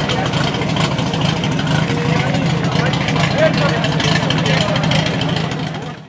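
Portable fire pump's engine running steadily at speed, with shouting voices over it; the sound fades out near the end.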